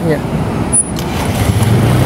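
Steady road traffic noise: cars and motorbikes passing on a busy multi-lane road, a continuous low rumble of engines and tyres.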